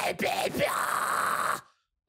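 A man's harsh, raspy high metal scream that stops abruptly shortly before the end. It is made with the soft palate dropped and squeezed at the back of the mouth.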